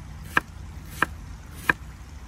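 Kitchen knife slicing an onion and striking a wooden cutting board, three chops about two-thirds of a second apart.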